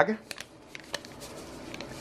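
Jello powder pouring from its bag into a bowl: a faint dry rustle of the packet and powder, with a few small ticks.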